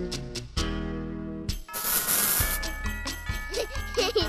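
Upbeat background music with a regular beat. A little before halfway it cuts out for a moment, then a short burst of rushing, hiss-like noise lasts under a second while the music resumes.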